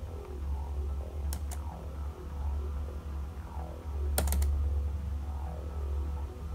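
Quiet background music with a steady low bass, over a few sharp clicks from the laptop: two clicks about a second and a half in, then a quick double click a little after four seconds, as a file is opened.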